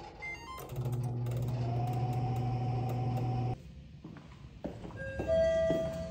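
A few quick electronic beeps from a countertop oven's control panel, then the oven running with a steady hum and a whine that rises as its fan spins up, cutting off abruptly about three and a half seconds in. A short run of chime-like pitched notes follows near the end.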